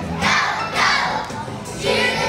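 A large group of preschool children singing together, loud and a little shouty, in strong phrases about half a second apart.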